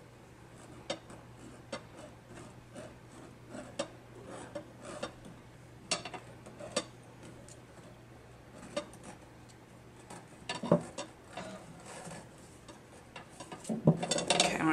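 Irregular light clicks and taps of a wooden tapestry needle being worked over and under the taut warp threads of a frame loom, with a small cluster of sharper clicks a little before the end.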